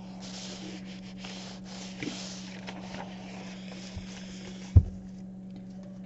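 A dry clothes iron sliding back and forth over a sheet of coffee-dyed paper laid on a towel, a rustling hiss with small scrapes, stopping with one thump a little before the end.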